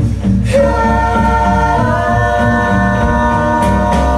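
Live band playing: several voices and a violin holding long notes, which shift to a new chord about halfway through, over a plucked upright bass line.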